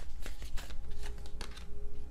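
A deck of oracle cards being shuffled by hand: a run of quick, irregular card clicks and flicks.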